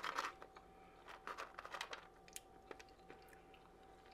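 Faint, scattered small clicks and crackles of fingers picking through fries in a plastic takeout container.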